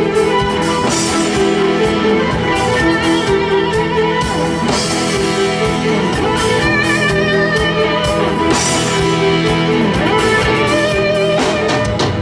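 A live rock band plays an instrumental passage on electric bass, drum kit and synthesizer keyboards, with a wavering lead melody line over a steady beat.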